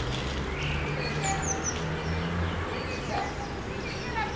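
A few small birds chirping briefly, over a low steady hum.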